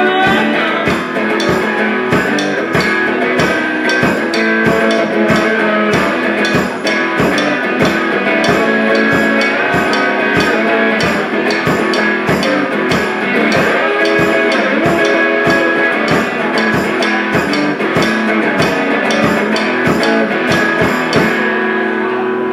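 Live band playing an instrumental break: guitars over a steady drum beat of about two hits a second, with no singing.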